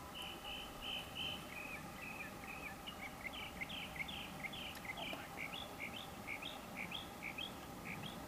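A songbird singing a long run of repeated whistled notes: about three even notes a second at first, then, from about two seconds in, a quicker series of short notes alternating high and low.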